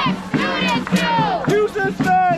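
A crowd of marchers chanting in unison: loud shouted voices in a steady syllable-by-syllable rhythm.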